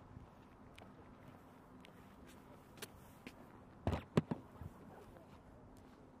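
Clicks and knocks of a pilot climbing out of an F-35B cockpit onto the metal boarding ladder, with a cluster of louder knocks about four seconds in, over a faint steady hum.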